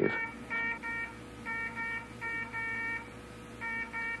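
Electronic medical monitor alarm beeping in quick pairs, about one pair a second, over a steady low hum.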